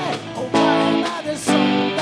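Live rock band playing electric guitars and an electric bass, with full chords struck about half a second in and again about a second later and left to ring.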